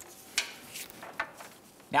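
A few sharp, irregular metallic clinks as a socket and extension are fitted onto the nut holding the positive battery cable on the starter's terminal stud.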